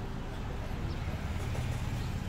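Steady low background rumble, a little stronger about one and a half seconds in, of the kind that passing road traffic makes.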